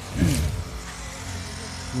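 Low steady hum of a vehicle engine running nearby, under a single short spoken syllable near the start.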